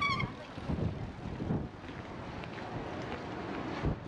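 Wind buffeting the microphone of a rider on a moving scooter, an uneven low rumble. A short high tone sounds right at the start.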